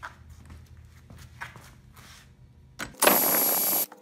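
A drill driver with a socket runs in one burst of just under a second with a high motor whine, backing out a self-tapping screw from a recliner mechanism. Before it come light clicks of metal parts being handled.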